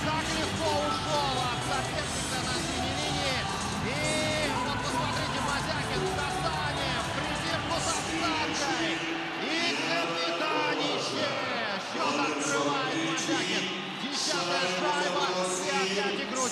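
Music in the arena after an ice hockey goal, with voices and crowd sound mixed over it.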